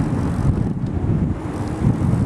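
Wind buffeting the microphone while riding along on a bicycle: a steady, dense low rumble.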